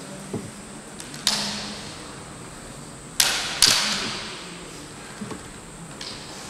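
Bamboo shinai cracking sharply in kendo exchanges: one hit about a second in, then two quick hits just after the three-second mark. Each one echoes and dies away in the large hall.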